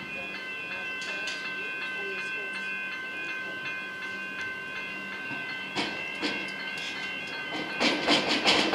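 Comeng electric suburban train approaching the station: a steady running sound with several high, steady tones, two sharp rail clicks about six seconds in, then louder as it draws close near the end.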